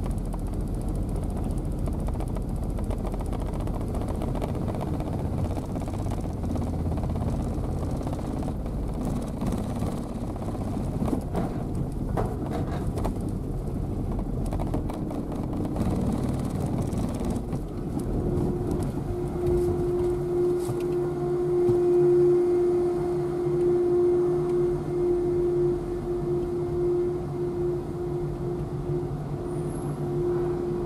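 Car engine and tyre noise as the car creeps up a steel ramp into a ferry's car deck. From a little past halfway, a steady hum with a fixed pitch joins the rumble inside the enclosed hold.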